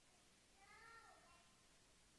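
Near silence, broken about half a second in by one faint, short pitched squeak that rises and falls over about half a second.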